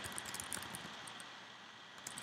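Faint keystrokes on a computer keyboard: a few soft clicks, mostly in the first second, over quiet room tone.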